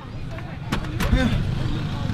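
Low, steady rumble of a motor vehicle, with two sharp knocks about a second in and short vocal sounds over it.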